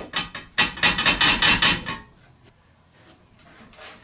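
Plastic bucket seat knocking and rattling against the steel tube frame of a buggy chassis as it is set in place and pressed down: a quick run of knocks over the first two seconds, then quiet room tone.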